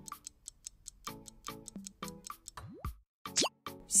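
A quiz-video countdown cue: quick, evenly spaced ticks mixed with short plucked notes. It ends in a quick swooping glide as the answer is revealed.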